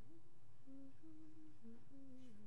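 A single voice humming a slow, wordless tune, holding short notes that step up and down in pitch.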